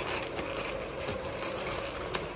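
Kraft honeycomb paper crinkling and rustling as it is folded and pressed around a box by hand, over a steady low hum.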